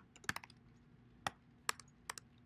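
A few keystrokes on a computer keyboard: a quick run of taps at the start, then two single taps spaced well apart.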